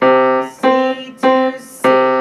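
Grand piano: four octaves struck one after another, a little over half a second apart, each ringing briefly before the next.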